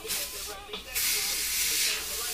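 Air hissing out through the valve stem of a Onewheel tire as it is let down, starting about halfway through and holding steady and loud to the end; a short puff of hiss comes right at the start. Background music with rapping plays underneath.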